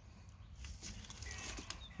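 Faint rustling and scraping of clothing and handling as the folded pruning saw is moved down to its belt holster, growing a little louder in the second half.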